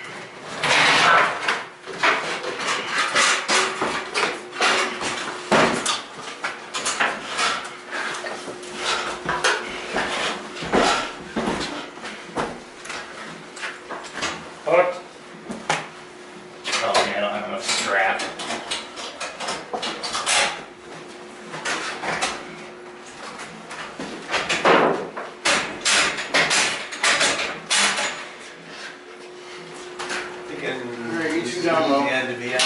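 Irregular knocks, bumps and rattles of a large wooden crate being tilted and moved on a cart, coming in scattered bursts.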